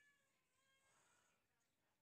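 Near silence: the audio drops out between sentences.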